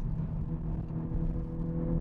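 2021 Honda Civic Type R's 2.0-litre turbocharged four-cylinder engine running at steady revs, heard from inside the cabin over a low rumble of road noise.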